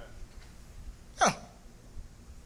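A man's voice says one short word, "well," with a steeply falling pitch about a second in, through the hall's sound system; otherwise only quiet hall ambience.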